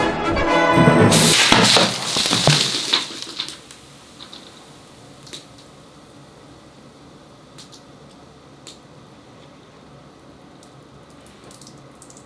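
Bottle of fermented passion fruit pulp bursting open: a loud hissing gush of gas-driven juice spraying out about a second in, fading away over about two seconds. The pressure comes from the pulp fermenting at room temperature. Afterwards a few faint ticks.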